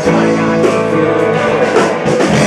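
Live blues-rock band playing: distorted electric guitars over electric bass and a drum kit with steady cymbal hits.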